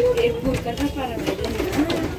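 Indistinct voices of people talking, with a bird calling among them.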